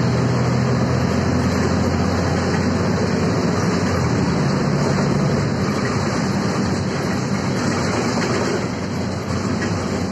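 Inside a moving articulated Volvo 7000A city bus: steady engine hum and road noise. The engine note weakens a little past halfway.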